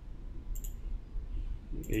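Computer mouse clicking: a quick cluster of sharp clicks about half a second in.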